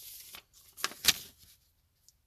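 Rustling handling noise and a couple of sharp clicks near the middle, as a book's pages are leafed through to find a passage.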